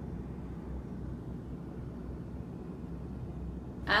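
Bombardier Q400 turboprop heard from inside the cabin on the ground, its engines and propellers running in a steady low drone.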